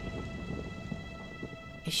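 Cartoon thunderstorm sound effect of rain and rumbling thunder, slowly dying away, under the last held notes of the music score.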